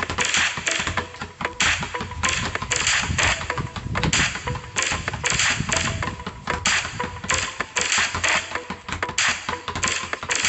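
Background music mixed with the quick, repeated thuds of two basketballs being dribbled on concrete, a few bounces each second.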